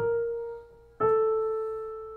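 Piano playing a single note twice, about a second apart; each note is struck, rings and fades.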